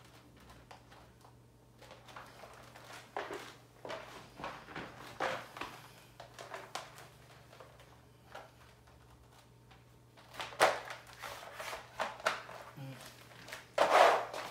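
A clear vinyl (PVC) chair mat being unrolled and pressed flat by hand on a tile floor: scattered scuffs, rustles and light slaps of the plastic sheet against the tiles, busier and louder in the last few seconds.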